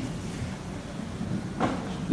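Pause in speech: steady low room rumble picked up by the lectern microphone, with a short intake of breath about one and a half seconds in.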